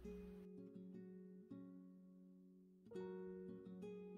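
Quiet background music of a plucked string instrument, guitar-like, picking single notes that ring on, with a louder group of notes about three seconds in.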